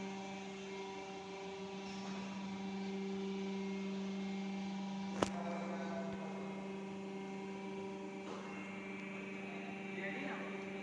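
Steady electric hum from a GORSAN 50-ton hydraulic press's motor and pump unit, one unchanging low tone with overtones. A single sharp click about five seconds in.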